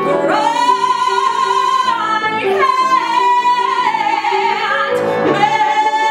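A woman singing a musical theatre song, holding three long notes in turn over instrumental accompaniment.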